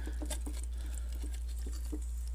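Faint light taps and scratches of fingers picking at frosty ice frozen in a drinking glass, over a steady low hum.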